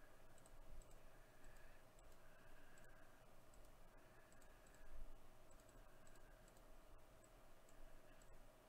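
Near silence with scattered faint, irregular clicks of a computer mouse, over a faint steady hum.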